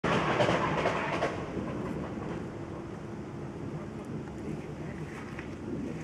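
A steady, noisy outdoor rumble with no clear tone. It is loudest for about the first second and then settles to a lower, even level.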